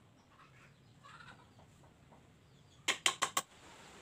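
Four quick, sharp knocks in about half a second, some three seconds in, typical of a hammer tapping nails into sawo wood boards.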